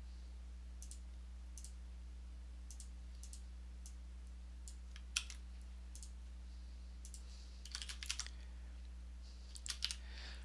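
Faint, scattered computer mouse clicks and keyboard key presses, roughly one every second, with a quick run of several keystrokes about eight seconds in. A low steady hum sits underneath.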